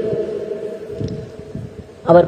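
A pause in a man's speech, leaving only a steady hum from the recording and a few faint knocks.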